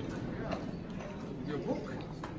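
Indistinct voices with a few sharp knocks.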